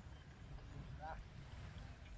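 Low wind rumble on the microphone, with one short pitched call about a second in.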